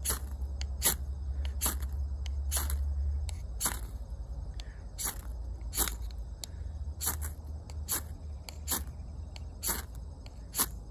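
The spine of a 440C steel knife is scraped again and again down a ferro rod, making about a dozen sharp rasping strokes a little more than once a second and throwing sparks into the tinder.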